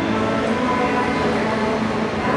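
Steady, loud background din of a large indoor exhibition hall, an even echoing hubbub with hums at several pitches and no single sound standing out.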